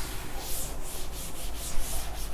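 A cloth wiping chalk off a chalkboard: quick back-and-forth rubbing strokes, about four a second.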